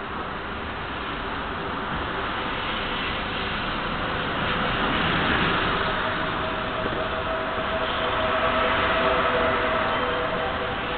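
Double-deck electric passenger train rolling in along the platform of a covered, concrete-walled station. Its running noise builds as the coaches pass close by, and a steady whine joins in about halfway through.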